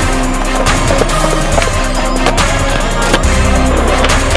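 Music with a steady beat, mixed with a skateboard rolling on a concrete deck and the clicks of its wheels and board.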